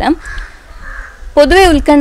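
A woman's speech breaks off for about a second, and a crow caws faintly in the background during the pause before her voice resumes.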